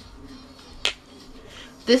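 A single sharp click about a second in, from handling a small glass nail polish bottle.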